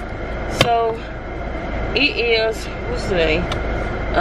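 Steady low rumble inside a car cabin, with a few short, high-pitched vocal sounds from a small child.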